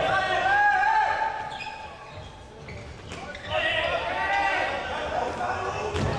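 Voices echoing in an indoor sports hall during futsal play, with the ball thudding on the hard court floor. The voices fade for about a second midway, then pick up again.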